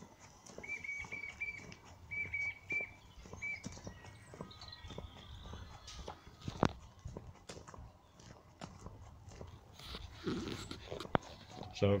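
Footsteps crunching along a gravel canal towpath, a series of short irregular steps, with a small bird giving a few short high chirps in the first few seconds.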